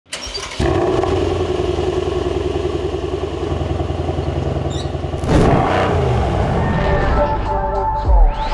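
Mercedes-AMG C63 S twin-turbo V8 starting up through a valved, catless Fi exhaust and settling into a steady, pulsing idle. About five seconds in there is a sharp rev, and music begins to come in near the end.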